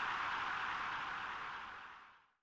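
A steady hiss of noise, like a filtered white-noise sweep, used as a transition sound effect; it fades out near the end.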